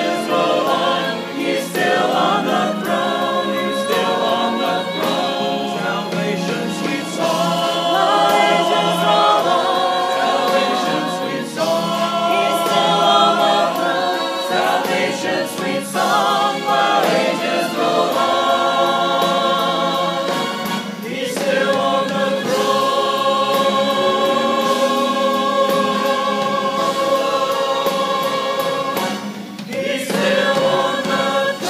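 Mixed choir of men's and women's voices singing a hymn together in harmony.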